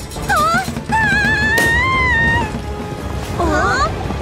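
Cartoon earthquake sound effect: a low rumble under background music. Over it come high, sliding cries of fright, a short one near the start, a long rising-and-falling one, and a trembling, falling one near the end.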